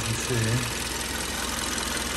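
A 2013 Kia Soul's 1.6-litre GDI four-cylinder engine idling steadily, with the clicking of its direct fuel injectors ticking over the idle.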